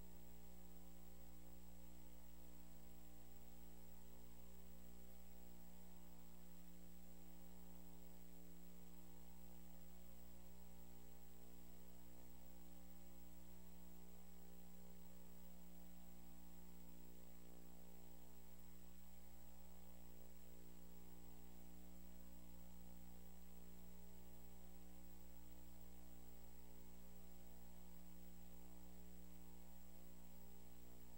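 Steady electrical mains hum with a stack of overtones and a faint high steady whine, unchanging throughout; nothing else is heard.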